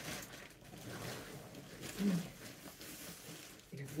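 Fabric rustling and shuffling as a fur coat with a slippery lining is pulled out of a wardrobe and handled, with a brief murmur from the woman about two seconds in.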